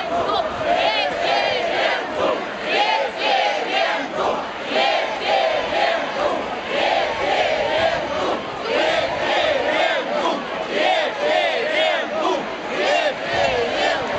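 Large crowd of marchers shouting and chanting slogans together, with the loudness pulsing roughly once a second.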